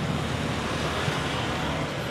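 Steady road traffic noise from a busy city street.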